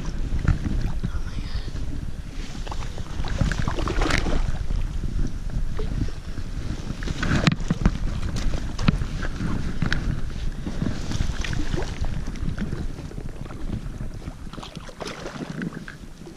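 Wind buffeting a camera microphone mounted on a float tube, a steady low rumble, with water movement around the tube and scattered knocks and rustles of handling, the sharpest about four and seven and a half seconds in.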